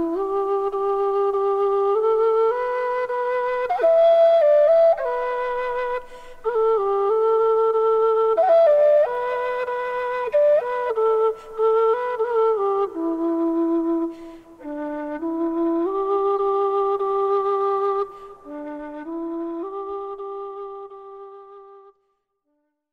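A slow solo melody on a flute-like wind instrument, one note at a time with held and stepping notes, fading out near the end.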